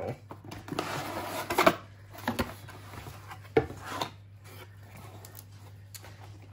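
Cardboard box flaps and packaging being handled: rustling and scraping for the first couple of seconds with a sharp crackle, then a few short knocks and clicks as items are moved, quieter near the end.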